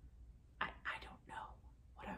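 A woman whispering a few short syllables, about half a second in, over a faint low hum.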